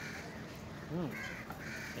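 Crows cawing, a few short caws with two close together in the second half. About a second in, a man gives a short "hmm".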